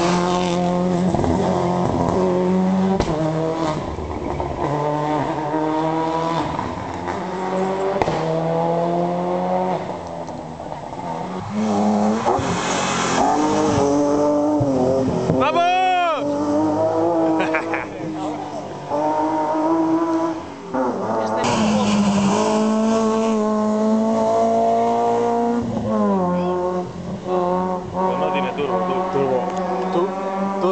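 Rally car engines at full throttle on a tarmac stage, the pitch climbing again and again and dropping at each gear change, with a Subaru Impreza rally car passing close at first. Near the middle the engine note sweeps quickly up and back down.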